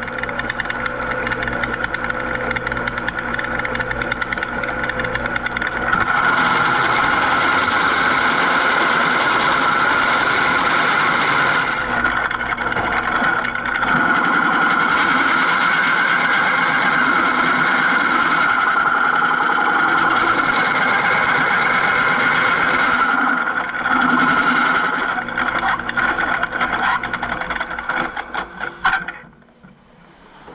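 Drill press boring through hardened steel with a 5/8-inch carbide-tipped masonry bit: a steady high-pitched whine from the bit cutting. It gets louder and brighter about six seconds in and breaks up and stops shortly before the end.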